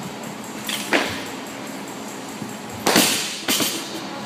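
A barbell loaded to 135 lb with bumper plates, with a short knock about a second in, then the bar landing on the floor with a loud bang just before three seconds and bouncing once more half a second later.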